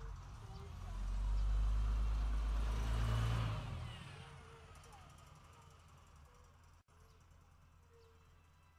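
A vehicle passing by: a low rumble with a rushing hiss that swells about a second in, holds for a couple of seconds, then fades away.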